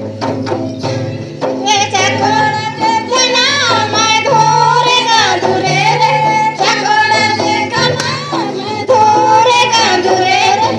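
Mundari folk song sung by a group of voices over a rhythmic drum beat.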